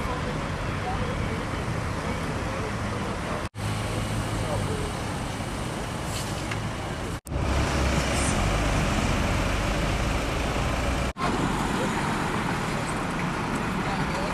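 Steady road traffic noise from cars running along a busy road, broken by three brief dropouts. In the third stretch a louder, lower engine rumble sits under the traffic.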